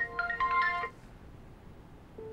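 Smartphone ringtone for an incoming call: a bright, marimba-like melody that cuts off abruptly just under a second in.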